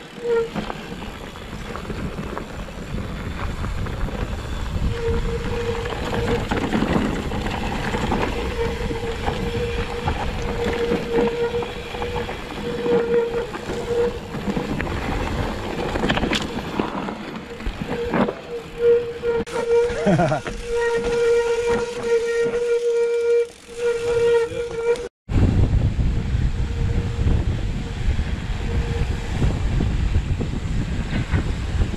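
Mountain bike ridden fast down a dirt forest trail, picked up by a handlebar-mounted camera: constant rattle and rumble of tyres and frame over the ground, with wind on the microphone and a steady buzzing tone through most of it. Near the end the sound cuts out for an instant, then there is heavier low wind rumble.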